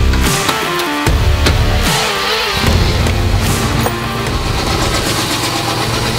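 Rock background music; from about three seconds in, the 1975 Ford Bronco's engine runs steadily underneath it, fitted with new graphite header gaskets and with no exhaust ticking.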